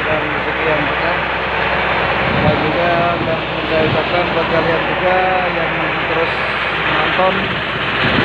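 A wooden fishing boat's inboard engine running steadily under way, with the rush of wind and water at the hull. Faint voices are heard in the background.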